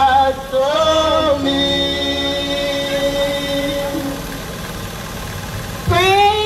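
Women singing a gospel song through microphones, with no instruments heard. About a second and a half in they hold one long note that slowly fades, and a voice comes back in strongly just before the end.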